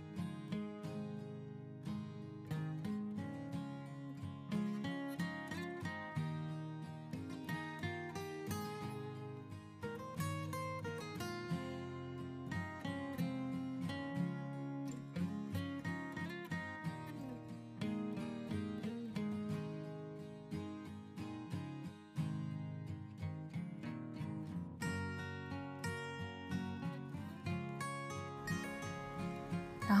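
Background music: an acoustic guitar with notes plucked in quick succession.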